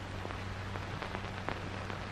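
Old film soundtrack noise between lines of dialogue: a steady hiss over a low hum, with a few scattered crackles and pops.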